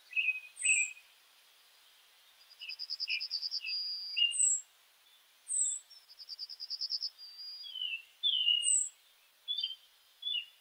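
Birds calling: short high whistles, scattered chirps, and two rapid trills, each ending in a held note.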